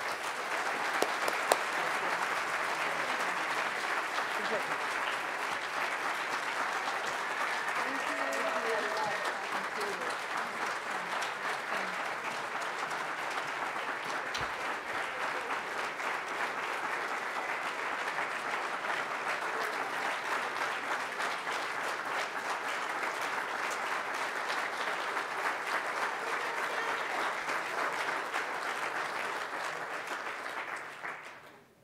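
Audience applauding steadily, the dense patter of many hands clapping at once, with a few voices faintly heard under it about eight seconds in.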